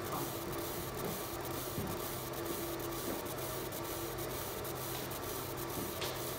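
Fiber laser marking machine engraving a picture into stainless steel: a steady hiss over a constant low hum, with faint regular ticks several times a second.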